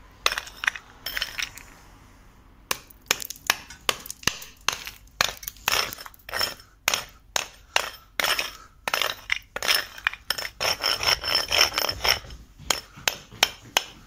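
A small hatchet repeatedly striking and chipping hardened cement mortar off a concrete floor, about two to three sharp hits a second with a short pause near the start, and broken mortar chips clinking. The latex-modified mortar on the latex-primed floor is bonded well and comes away only with difficulty, piece by piece.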